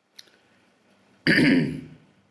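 A man clears his throat once, a short harsh rasp a little over a second in.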